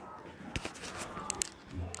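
Handling noise from a handheld camera being carried around a room: a handful of soft clicks and knocks.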